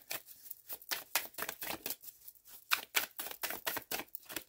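A deck of tarot cards being shuffled by hand: a quick, uneven run of soft card clicks and slaps as the cards are fed from one hand into the other.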